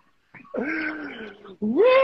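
A person's voice making two long, drawn-out wordless cries. The first drops in pitch and levels off; the second rises, holds at a higher pitch and drops at the end.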